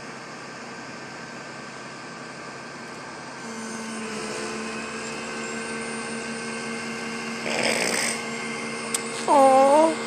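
Flatbed tow truck's hydraulic pump kicking in about a third of the way through, a steady machine whine over the truck's engine. A brief rush of noise comes near the end, and a person's voice just before the end.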